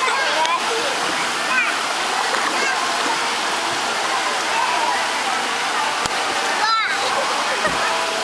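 Water spraying from a dolphin-shaped wading-pool fountain, a steady rush of falling water with some splashing.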